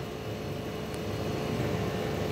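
Steady machine hum with one faint, steady tone running through it.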